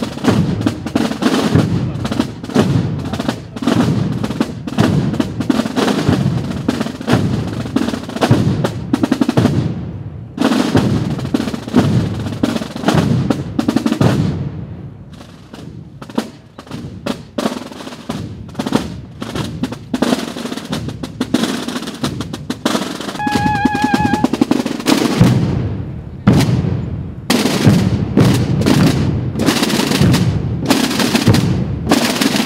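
A procession drum corps of marching snare drums and bass drums playing continuous rolls and beats. The drumming drops back for a few seconds around the middle, then builds up again.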